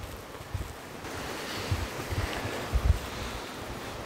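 Steady rushing of river water, with wind buffeting the microphone in irregular low rumbles.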